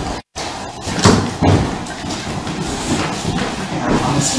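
Busy room noise with a brief total dropout near the start, then two sharp knocks or thumps about one second and one and a half seconds in.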